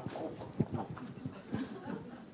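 A few soft knocks and handling sounds as a cloth is passed from hand to hand near a microphone, with faint murmuring voices.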